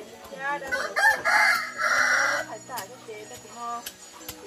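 A rooster crowing once, a long harsh call from about one second in until about two and a half seconds, loud and close. Sharp clicks of a knife blade striking kindling come now and then around it.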